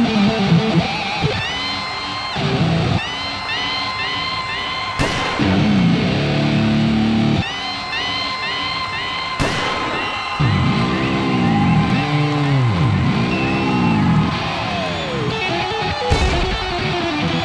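80s-style rock music led by electric guitar, with bent notes and deep swooping pitch bends that rise and fall over and over. Two sharp hits cut through, about five and nine and a half seconds in.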